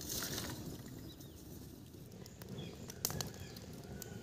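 Small open fire of dry thorny twigs burning, with a soft fluttering of flame and a few sharp crackles about three seconds in.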